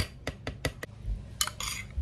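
A metal spoon clinking against a ceramic bowl as thick blended salsa is scraped from a plastic blender jar. There is a quick run of light clicks in the first second, then another clatter about a second and a half in.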